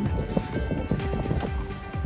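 Background music with wind buffeting the microphone in irregular low thumps and rumble.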